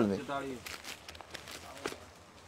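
A man's voice trailing off in the first half second, then a few faint taps and rustles.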